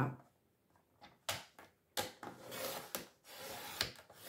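Sliding paper trimmer cutting paper: a few light clicks, then the cutting head scrapes along its rail in two rasping strokes.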